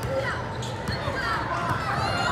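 A basketball being dribbled on a hardwood court in a large gym hall, with voices calling across the court.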